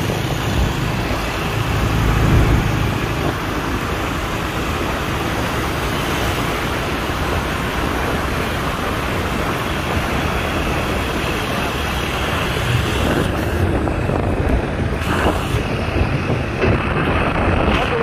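Steady rush of wind and traffic noise while riding a motorbike through busy city traffic, with the engines of the surrounding scooters and cars running.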